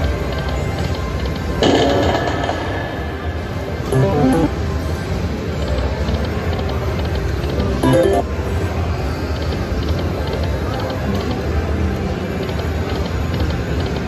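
Lucky 88 video slot machine playing its spin and win sounds: short pitched chiming tunes about 2, 4 and 8 seconds in, the one near 8 seconds with a small line win, over a steady background din.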